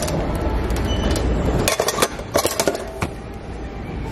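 Shopping cart rolling over a hard store floor with a low rumble and rattle, then a short run of sharp knocks and clatters about two seconds in, as the boxes and pans in the cart are jostled.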